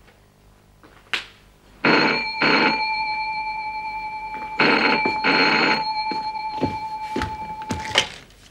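Desk telephone bell ringing in two double rings about three seconds apart, a steady tone lingering after each. A sharp clack near the end as the handset is lifted.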